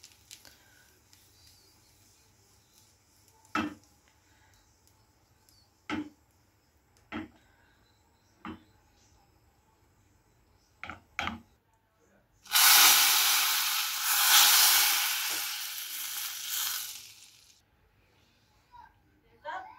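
Hot butter with dried mint sizzling, loudly poured into a pot of yayla çorbası (Turkish yogurt soup) as its topping sauce, a hiss that starts about two-thirds of the way through and lasts about five seconds. Before it come a few light knocks.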